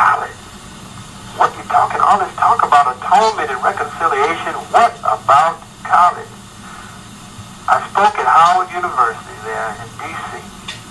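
A person talking in phrases with short pauses, the voice thin and tinny with little low or high end.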